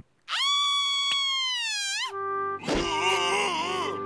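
Wordless cartoon character vocalizing: a long, high held call that wavers at its end, then a second, wavering call, with background music coming in about halfway.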